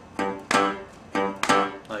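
Resonator guitar in open G tuning: the open fifth string, a low G, thumb-picked over and over as a pulsating bass note, about two notes a second, each ringing out and fading before the next.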